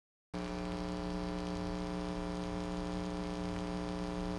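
Steady electrical hum from a guitar amplifier, made of several held tones. It starts abruptly just after the opening silence and stays level.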